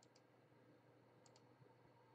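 Near silence with faint computer mouse clicks: two quick double clicks, one at the start and one a little after a second in, each a button press and release.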